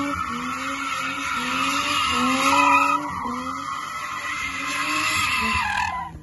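BMW E30 325iS Evolution 2's straight-six engine revving high as the car spins donuts, its pitch climbing and dropping back over and over, about every three quarters of a second. The rear tyres screech steadily underneath. Both cut off sharply near the end.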